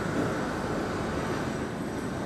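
Steady background noise of the room, an even rumble and hiss with nothing standing out.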